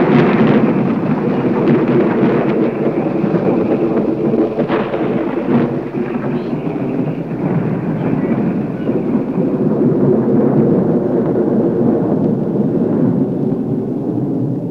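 Continuous thunder-like rumbling on a film soundtrack, with a few faint held tones under it and a brief sharper crack about five seconds in.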